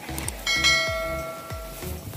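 A bell-chime sound effect from a subscribe-and-notification-bell animation: one ring about half a second in that fades out over about a second, over background music with a steady beat.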